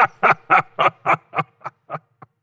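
A man laughing, a run of short breathy "ha" pulses about four a second that grow fainter and trail off near the end.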